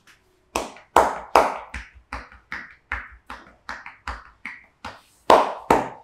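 Percussive back massage: a massage therapist's hands slapping a client's clothed back in a steady rhythm, about two and a half strikes a second, loudest at the start and again near the end.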